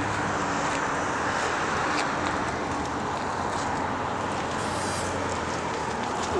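Steady rushing noise of road traffic, with a low hum underneath.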